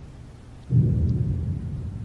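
A deep, low boom starts suddenly about two-thirds of a second in and slowly dies away: a dramatic hit in the soundtrack score.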